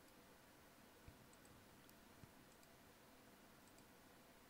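Near silence with a few faint clicks, the clearest about a second in and another about two seconds in.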